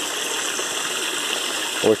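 Steady rush of running water circulating in a backyard aquaponics system.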